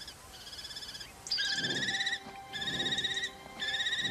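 Common kestrels giving a run of long, quavering trilled calls, each under a second and about one a second. The first calls are faint and the last three louder.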